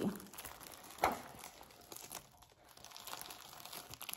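Plastic packaging and a rolled diamond-painting canvas crinkling as they are handled and unrolled, with a sharper crackle about a second in.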